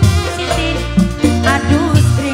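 Live tarling-dangdut band music played loud through the stage PA, with a strong bass line and a melody line that wavers up and down about one and a half seconds in.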